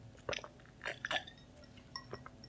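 Close-up gulps as a drink is swallowed from a glass: three short swallows within the first second and a half.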